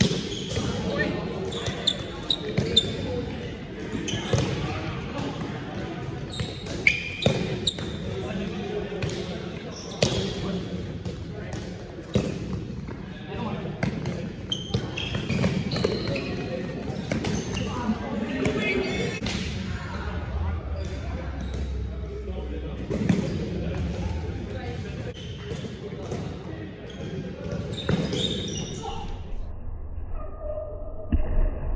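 Spikeball game: repeated sharp smacks of the small ball being hit by hand and bouncing off the round net, irregularly spaced, with players' voices calling out, echoing in a large gym hall.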